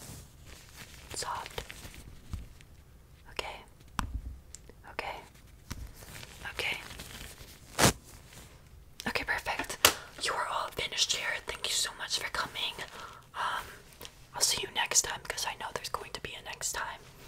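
Close-mic ASMR whispering, sparse at first and nearly continuous in the second half, with soft rustles and taps from nitrile-gloved hands and a makeup brush brushing near the microphone; one sharper tap about eight seconds in.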